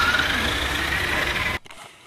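A radio-controlled toy truck's motor whining over a steady hiss, the whine slowly rising in pitch, then cutting off suddenly about a second and a half in.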